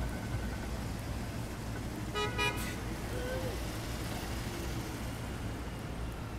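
Steady city street traffic, with a brief car horn toot about two seconds in.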